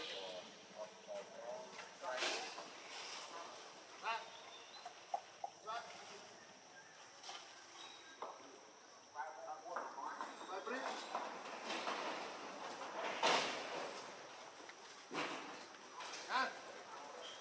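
Indistinct voices of people talking in the background, with scattered short clicks and rustles; the loudest is a brief burst of noise near the end.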